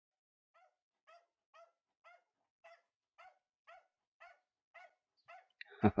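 Miniature schnauzer giving short, faint barks in an even rhythm, about two a second, eleven or so in a row.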